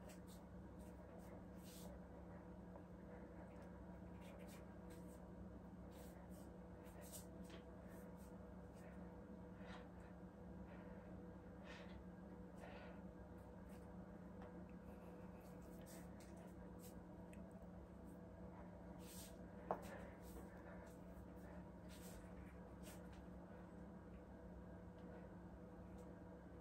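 Near silence: room tone with a low steady hum, faint scattered rustles, and a single sharp click about twenty seconds in.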